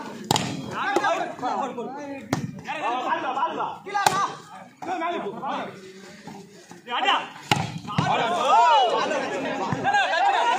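Sharp slaps of hands striking a volleyball during a rally, about four separate hits, over loud voices of players and spectators calling out, which swell near the end.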